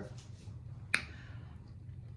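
Black pepper shaker shaken over a salad bowl: faint shaking with one sharp click about halfway through.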